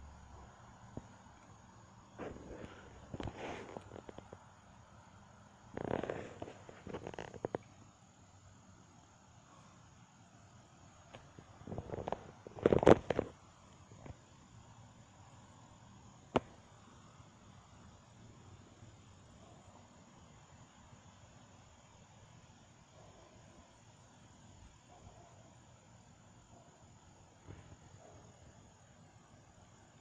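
A neighbour's dog barking in three short bouts a few seconds apart, the third the loudest, over a faint steady outdoor background.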